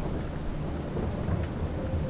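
Steady rain falling, with a low rumble of thunder underneath.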